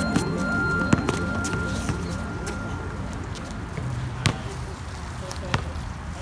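A basketball bouncing on an outdoor asphalt court: a handful of separate sharp bounces, spread over a few seconds. Faint voices and the fading tail of background music run underneath.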